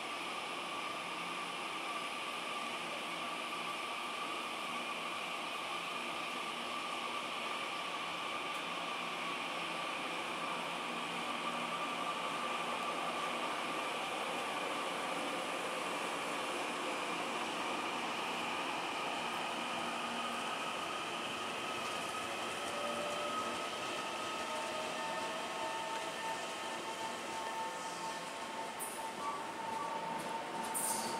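Taiwan Railway TEMU2000 Puyuma tilting electric train moving along the station track: a steady running noise with a whining tone from its electric drive. From about two-thirds of the way in, a second, slowly rising whine joins it as the train picks up speed.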